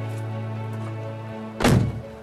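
Background music with long held notes, then, about one and a half seconds in, a single heavy thunk of a car door being shut.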